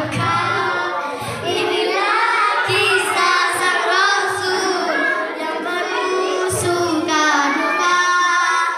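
Young girls singing into a microphone, their voices carried by a loudspeaker with a long, melodic line.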